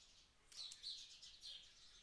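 Near silence, with a series of short, faint, high chirps from birds in the background.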